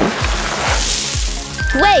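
Upbeat background music with a steady beat, over a rustle of about a second from chocolate-coated popcorn being scooped into a paper bucket; a voice begins near the end.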